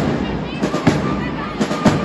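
Marching drums beating sharp, uneven hits over crowd chatter.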